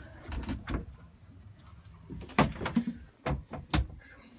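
Engine-bay deck hatch on a boat being lifted open: a series of knocks and thumps, loudest about two and a half seconds in and again near the end, with a short creak among them.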